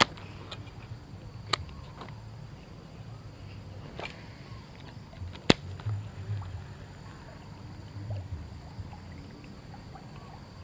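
Handling noise from a baitcasting rod and reel: a few sharp clicks, the loudest about five and a half seconds in, over a low steady rumble.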